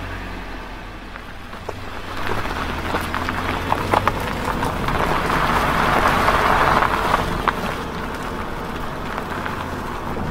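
A car engine running with a steady low hum, its road noise swelling through the middle and easing toward the end, with a few light clicks a few seconds in.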